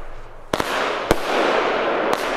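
A 25 mm consumer firework cake firing brocade crown shells. There are two sharp bangs about half a second apart, over a continuous crackling hiss from the burning glitter stars.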